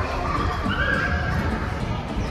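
A young child's short, high-pitched squeal about half a second in, over the steady din of a busy indoor play area.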